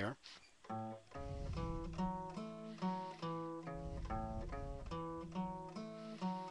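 Acoustic guitar played one note at a time on its low strings: a bass walk starting on the open A string and stepping up the arpeggio and back down, a few plucked notes a second beginning about a second in.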